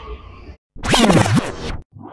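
DJ turntable scratch sound effect: a record worked back and forth under the needle. It starts just under a second in and lasts about a second, its pitch sweeping up and down.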